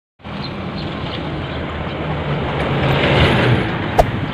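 A motorcycle tricycle with a sidecar drives past on the road. Its engine grows louder until just past three seconds in, then drops in pitch as it goes by, over steady road noise.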